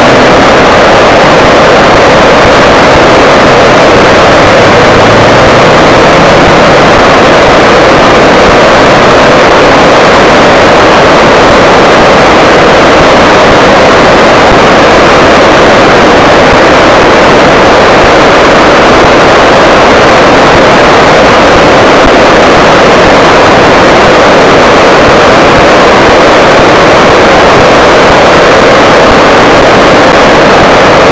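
Flooded river in spate, fast brown water rushing past trees and over the banks: a very loud, steady rushing noise without a break.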